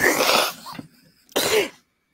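A woman laughing in breathy, unvoiced bursts: one long burst at the start, then a short one about a second and a half in.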